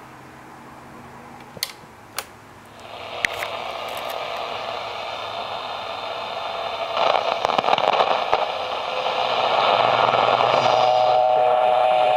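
Sony TFM-1000W transistor radio hissing with AM static as its tuning knob is turned between stations, with a few sharp clicks at first. The static grows louder about three seconds in and crackles around seven seconds, and a steady whistling tone comes in near the end as a signal is approached.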